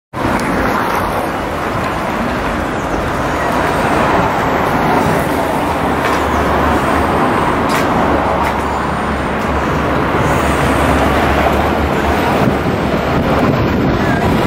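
Steady city street traffic noise, with a low vehicle engine rumble that grows stronger in the middle.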